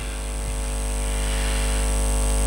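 Steady electrical mains hum and buzz from a microphone and PA sound system, with a little hiss, slowly growing slightly louder.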